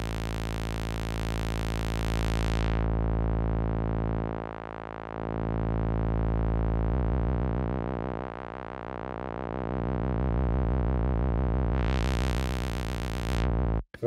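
1973 MiniKorg 700 monophonic synthesizer holding a low buzzy sawtooth note. The tone brightens and then darkens twice, near the start and again near the end, and dips in loudness a couple of times. From about halfway the note takes on a wavering beat, and it cuts off just before speech resumes.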